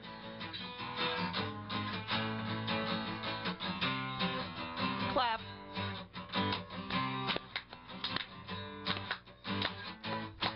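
Acoustic guitar strummed in a steady rhythm: an instrumental break between the sung verses of a short song.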